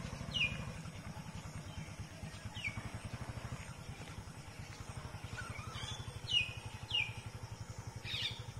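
Small motorcycle engine idling with an even, low putter at about ten beats a second. Birds call over it with several short falling whistles, the loudest near the end.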